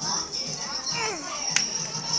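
Children's voices and chatter over dance music with a pulsing beat; one child's voice slides down in pitch about a second in, and a sharp click comes near the end.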